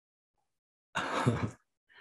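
A man's short, breathy laugh, about half a second long, about a second in.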